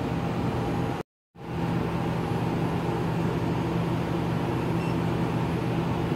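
Laminar flow hood blower running with a steady hum and airy hiss. The sound drops out completely for a moment about a second in, then carries on unchanged.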